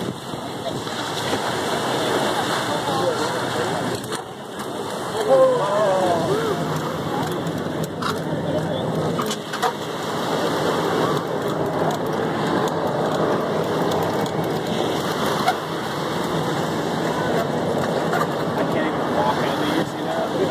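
Indistinct voices and chatter over a steady noisy wash of waves breaking on the shore, with a few sharp knocks about eight and nine seconds in.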